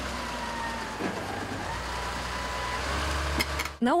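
Heavy snow-clearing machinery, a front loader working beside a dump truck, running steadily: a low engine rumble with a faint steady whine above it, and a couple of light knocks near the end.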